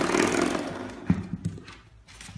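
Spring door stop flicked by a puppy, twanging with a buzzy boing that fades over about a second, followed by a few lighter knocks as it is struck again.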